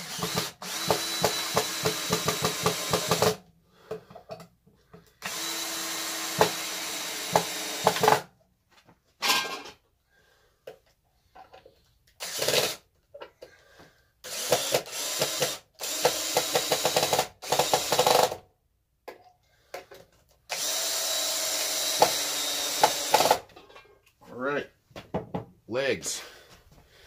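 Cordless drill driving deck screws through a 2x4 leg into the 2x6 frame of a wooden stand: four runs of about three seconds each, with a few short bursts between them as screws are started and seated.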